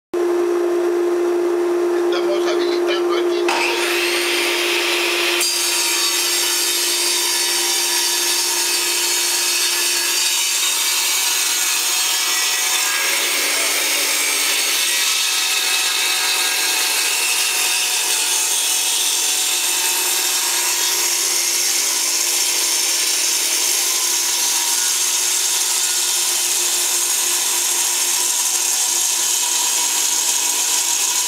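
Portable table saw running and ripping a block of hardwood, the blade cutting steadily through the wood with a steady motor hum that fades about ten seconds in.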